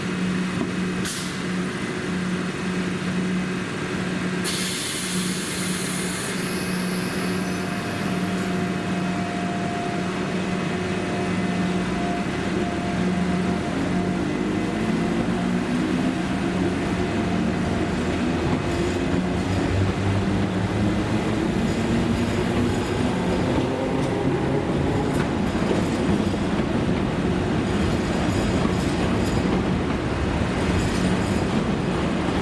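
London Overground Class 317 electric multiple unit pulling away from a platform over a steady low hum. A short hiss of air comes about five seconds in, then the traction motors whine, rising in pitch as the train gathers speed.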